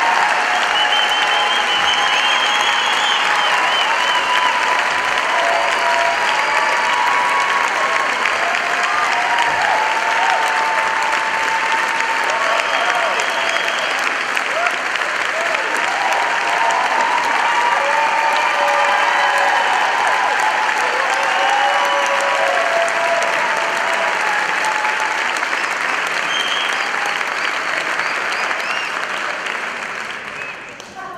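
Audience applauding steadily, with voices calling out and whooping over the clapping; the applause dies down near the end.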